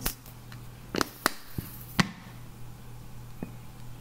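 A handful of sharp clicks and taps, spaced irregularly over the first two seconds with a lighter one later, from a honey bottle being handled and opened over the pan, over a steady low hum.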